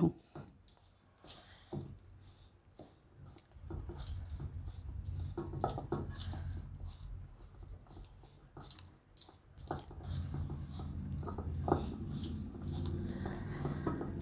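Silicone spatula stirring mashed raw banana and spice powder in a stainless steel bowl: scattered soft taps and scrapes against the metal, with a low steady hum underneath from about four seconds in.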